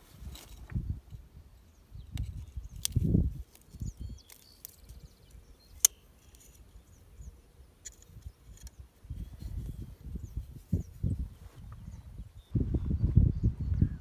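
Scattered small metal clicks of needle-nose locking pliers working the snap ring off a John Deere 4020's PTO shaft, with one sharp click about six seconds in. Patches of low rumbling, heaviest near the end.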